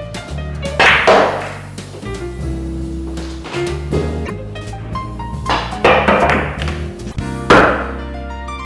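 Background music with a steady bass line and loud crash-like accents about a second, four seconds, six seconds and seven and a half seconds in.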